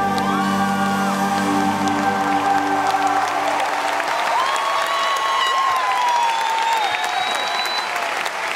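Live band's final held chord ringing out and fading about three and a half seconds in, as audience applause and cheering swell and take over.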